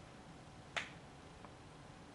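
A single sharp click about three quarters of a second in, over quiet room tone.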